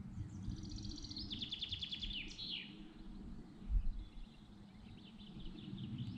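A songbird singing in conifer woodland: a rapid trill of repeated high notes that ends in a quick downward sweep, followed later by fainter song. A steady low outdoor rumble lies underneath, with a brief low thump a little past the middle.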